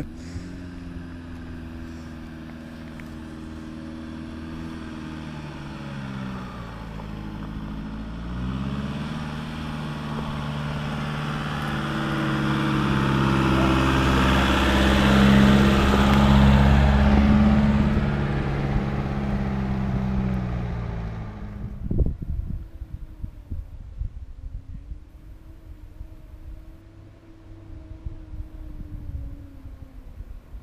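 Nissan Navara dual-cab ute's engine working under load as it climbs a dirt hill, growing louder as it comes past. Its note dips and picks up again about seven seconds in. Near 22 seconds the sound drops away suddenly with a few knocks, leaving a fainter engine sound further off.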